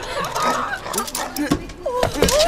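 A boy yelping in pain as he is swatted, with a dull thump about one and a half seconds in.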